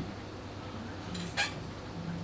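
A steady low hum with one short sharp click about one and a half seconds in.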